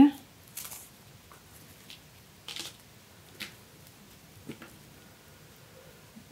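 A few brief, faint rustles of paper being handled, four or so short sounds spread over the few seconds, as green paper leaves are fitted and glued onto a paper card.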